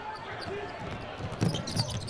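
A basketball dribbled on a hardwood court, with two loud bounces about a second and a half in, over the murmur of the arena crowd.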